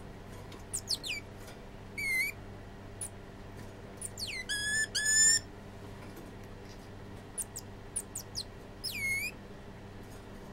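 Cotton-top tamarin calling: scattered short, very high chirps, and longer descending whistles about two seconds in, around four to five seconds in (the loudest, a quick run of three), and again near the end. A steady low hum runs underneath.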